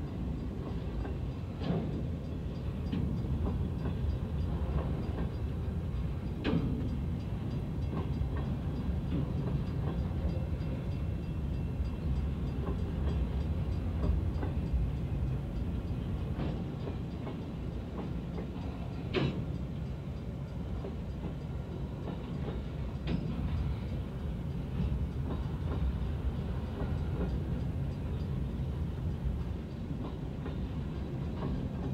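Freight train cars rolling steadily past a grade crossing: a continuous low rumble of steel wheels on rail with a few sharp clanks scattered through it. Heard from inside a car.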